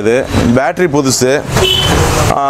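A man talking, with a short rush of hissing noise near the end.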